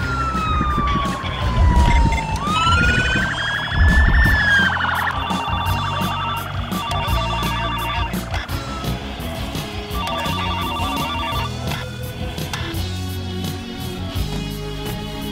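Police car siren wailing, sliding slowly down, back up and down again over the first five seconds, then giving way to spells of a fast pulsing tone, all over dramatic background music.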